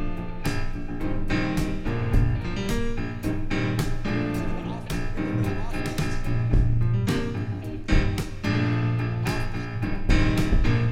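Live band of piano, electric guitar and Gretsch drum kit playing an instrumental passage, the piano to the fore over a steady drum beat.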